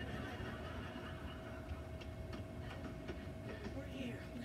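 Steady low rumble with a constant hum, and faint voices in the background.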